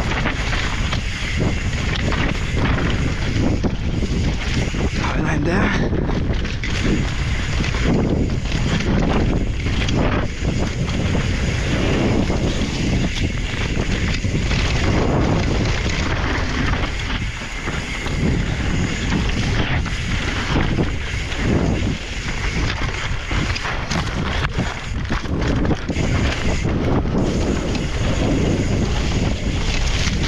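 Wind rushing over the camera's microphone during a fast mountain bike descent on a dirt trail, with the tyres rolling over dirt and roots and the bike's chain and frame rattling at each bump.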